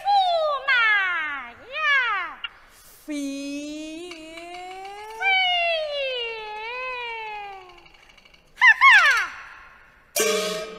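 Peking opera stylized recitation: a woman's high voice delivering lines in long, swooping glides of pitch, with a lower voice answering in the middle and the high voice returning briefly near the end.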